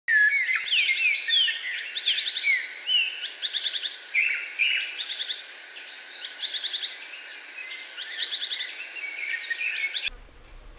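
Several birds singing and calling at once: a dense chorus of chirps, quick whistled slides and rapid trills.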